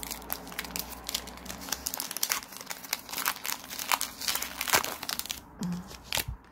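Foil wrapper of a Pokémon trading-card booster pack crinkling and tearing as it is ripped open by hand, in quick irregular crackles.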